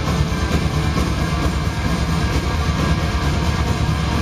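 Norwegian black metal band playing live at full volume, with electric guitars and drums in a dense, continuous wall of sound, heard from the audience.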